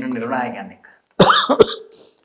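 A man's voice briefly, then, after a short pause, a man coughing sharply twice, about a second in.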